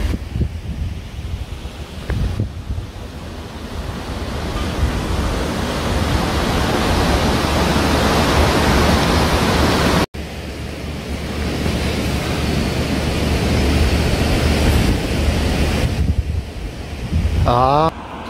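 Wind buffeting the microphone: a steady, rushing noise with a heavy, fluttering low rumble, growing louder over the first few seconds and staying loud.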